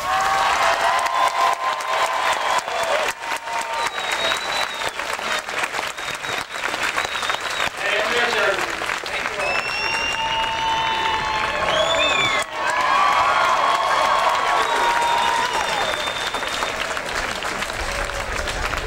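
Large crowd applauding steadily, with shouts and whistles rising and falling over the clapping.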